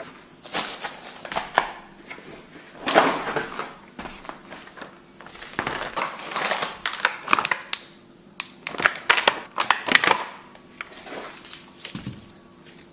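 Groceries being unpacked from a cloth shopping bag: crinkling plastic packaging and plastic trays and clamshell packs knocking down onto a table in irregular bursts.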